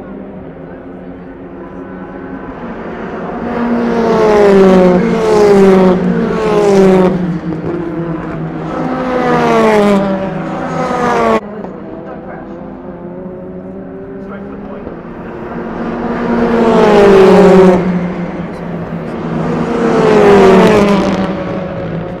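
TCR touring cars, turbocharged two-litre four-cylinder race cars, passing at speed one after another down the straight. Each comes up loud and drops in pitch as it goes by. A cluster of passes breaks off suddenly about eleven seconds in, and two more cars pass near the end.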